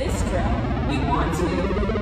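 Indistinct voices over a steady low rumble of room noise, echoing in a large gym.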